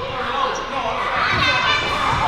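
Basketball bouncing on a hardwood gym floor, with a few thumps in the second half, amid voices in the hall.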